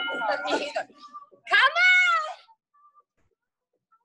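A woman's high-pitched, drawn-out vocal cry that rises then falls, about a second and a half in, from exertion during the squat drill. It is preceded by a brief burst of voice at the start.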